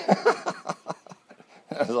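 Men laughing and talking.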